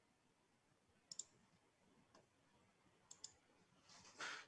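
Near silence broken by faint computer mouse clicks: a quick double click about a second in, a single soft click, and another double click near the end.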